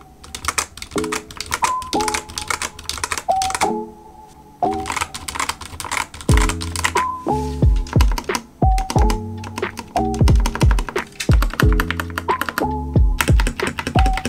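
Typing on a Dustsilver D66 mechanical keyboard with Gateron Brown tactile switches: a rapid run of keystroke clacks. Background music plays, with a steady deep beat coming in about six seconds in.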